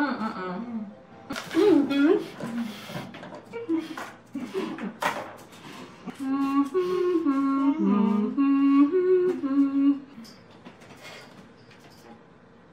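Women humming and making closed-mouth vocal sounds, muffled by whitening trays held in their mouths; from about six seconds in, one hums a held, stepping tune that breaks off near ten seconds. A few sharp, hissy sounds come in the first half.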